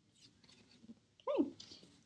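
A woman's voice saying a single "okay" with a rising-then-falling pitch about a second in. Before it there are only faint rustles of a clipboard being handled.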